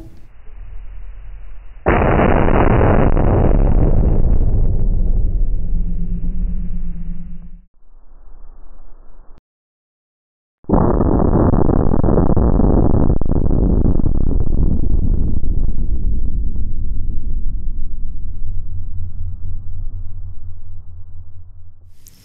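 Slowed-down boom of a .308 Winchester rifle bullet hitting a ballistics gel block, heard twice: a long, deep, muffled rumble about two seconds in, then after a short silence a second one that slowly dies away.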